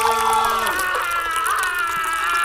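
A person's muffled, drawn-out moaning through a covered mouth, held on a wavering pitch.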